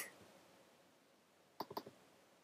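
Computer mouse button clicking: a quick run of about three clicks near the end, after near silence.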